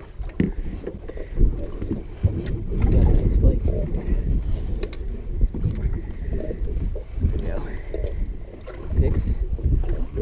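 Low, irregular wind rumble on the microphone, with scattered knocks and the rustle of a jacket rubbing over the camera.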